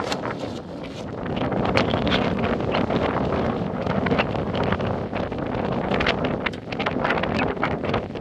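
Gusty wind buffeting the microphone in a steady rumble, with scattered short crunches and knocks throughout.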